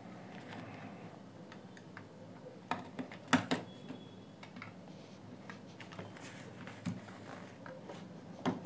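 Light clicks and taps of hands handling the plastic housing of a JBL Flip 2 speaker during disassembly: a quick cluster of four about three seconds in and one more near the end, over a faint steady low hum.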